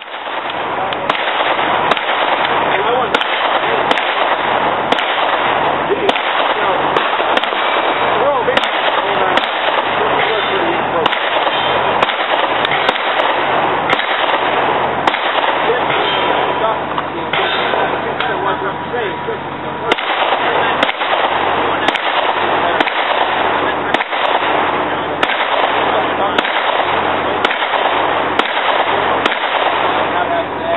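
Pistol shots fired at steel plate targets in a long string, about one shot a second. The recording is loud and distorted, with hiss filling the gaps between shots.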